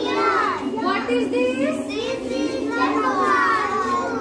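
A group of toddlers chattering and calling out at once, many high voices overlapping without a break.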